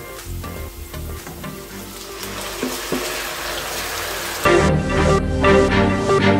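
Marinated chicken pieces sizzling as they hit hot oil in a frying pan with chopped ginger and garlic. The sizzle builds about two seconds in, under background music that grows louder near the end.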